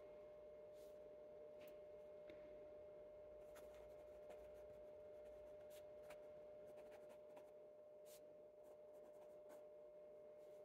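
Very faint scratching of a Santini Libra fountain pen's medium nib writing on paper: scattered soft strokes and ticks as the letters are formed, over a faint steady hum.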